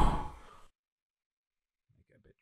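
Reverb tail of a man's recorded voice saying "two", run through a digital reverb effect with a large room setting, dying away over about the first half second, then dead silence.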